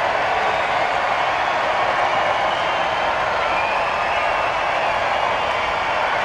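Crowd noise: a steady din of many voices with no break or swell.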